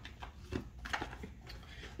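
A quiet pause: a low steady room hum with a few faint, soft clicks from light handling.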